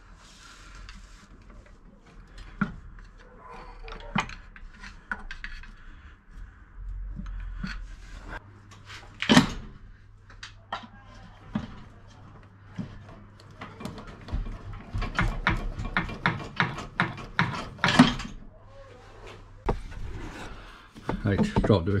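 Scattered metal knocks and clanks of tools and a manual gearbox being pried loose and lowered on a jack under a car, with two loud knocks about 9 and 18 seconds in and a quick run of clicks just before the second one.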